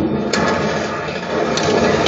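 Stern Spider-Man pinball machine in play: a dense mechanical rattle from the playfield, with sharp clicks about a third of a second in and again near the end.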